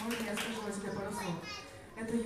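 Indistinct speech: a voice talking, getting quieter near the end.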